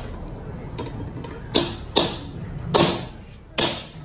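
Hammer blows on metal: a few faint taps, then three sharp knocks in the second half. They are typical of a new bearing being tapped into a Peugeot 206 rear trailing arm.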